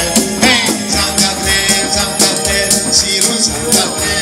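Small band playing an upbeat instrumental passage: a Korg arranger keyboard carrying the tune over maracas and jingle bells shaken in a steady rhythm.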